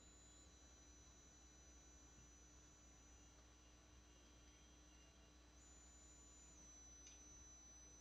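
Near silence: only a faint, steady hum and hiss.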